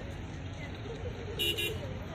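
Steady low outdoor rumble with faint voices, cut about one and a half seconds in by two quick, shrill toots of a vehicle horn.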